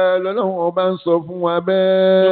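A man chanting in long, held melodic notes, broken by a few short pauses for breath, as in sung religious recitation.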